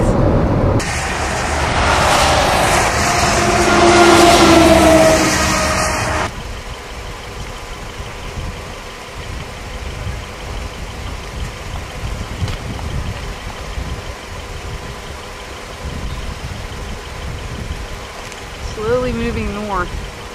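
Road and wind noise inside a moving car, with faint engine tones, for about six seconds. It cuts off abruptly to a much quieter low rumble.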